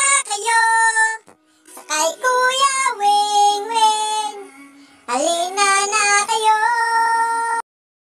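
A high, child-like singing voice performs a short intro jingle in three sung phrases with long held notes. It cuts off suddenly about two-thirds of a second before the end.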